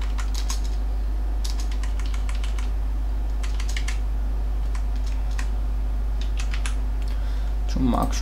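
Computer keyboard typing in several short runs of quick keystrokes, mostly repeated presses of the dash key, over a steady low hum.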